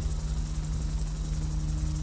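A steady low hum with a faint high buzz above it.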